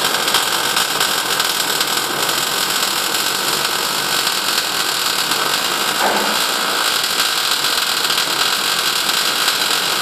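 Electric welding arc crackling and hissing steadily as a continuous bead is run around a half pipe, the arc held without a break.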